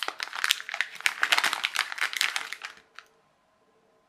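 Clear plastic packet crinkling as a small ESC is worked out of it by hand. The crinkling stops after nearly three seconds, followed by a single click.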